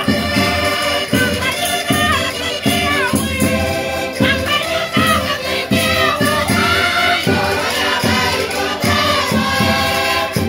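A crowd singing loudly together in the Minho folk style over Portuguese concertinas (diatonic button accordions) playing a lively tune with a steady beat of about two strokes a second.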